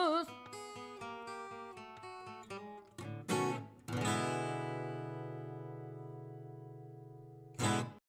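Outro jingle music on guitar: a run of short plucked notes, a strum about three seconds in, then a chord at about four seconds that rings and slowly fades, and a short loud note near the end.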